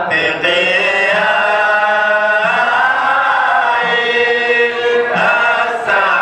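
Group of men chanting a mawlid qasida together, holding long notes that glide up and down. They break briefly between phrases near the start and again near the end.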